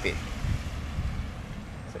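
Wind buffeting the camera microphone outdoors: a low, uneven rumble.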